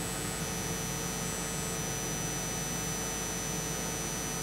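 Steady electrical hiss and hum with a thin, high-pitched whine that sets in about half a second in, and two short higher tones early on.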